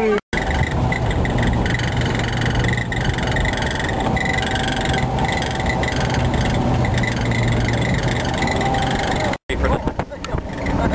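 Pickup truck driving, heard from its open bed: a steady engine hum mixed with road and wind noise.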